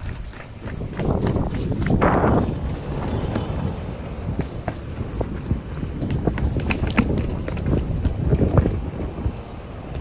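Running footsteps, a quick series of footfalls, picked up by handheld phone microphones along with a low rumble of wind and handling on the mics.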